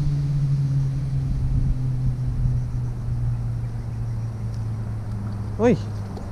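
A steady low engine hum that slowly falls in pitch, over a low rumble. A short exclamation comes near the end.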